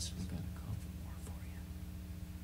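Faint murmured speech trailing off over a steady low electrical hum from the band's amplifiers and PA.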